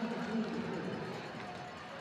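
Ice hockey arena ambience: a low, even crowd murmur that grows a little quieter, after a voice trails off in the first half second.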